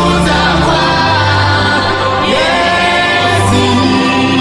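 Gospel worship music: a lead voice and choir singing long held notes over a steady bass accompaniment.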